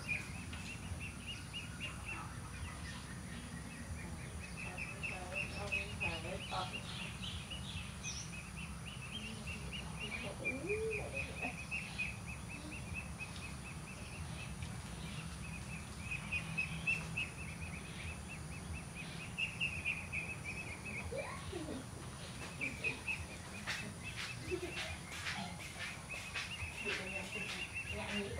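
Outdoor ambience: a high, rapidly pulsing chirping that goes on in long runs with short breaks, over a steady low rumble, with a few brief low gliding calls.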